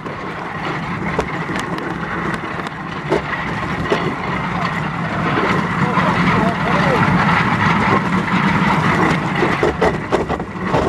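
Passenger bobsleigh running down an ice track: a steady loud rumble and scrape of the runners on the ice, with scattered sharp knocks from the sled, growing louder about halfway through.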